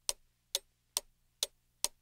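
Clock ticking, sharp, evenly spaced ticks about two a second.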